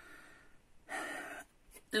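A woman's audible intake of breath about a second in, lasting about half a second, followed by a couple of faint mouth clicks.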